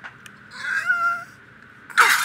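A single short, high-pitched, meow-like vocal cry lasting about half a second. Right at the end a loud, noisy outburst starts.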